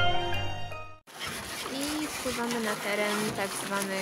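Background music fading out over the first second, cut off abruptly, then voices talking aboard a small boat on a river, with faint water noise.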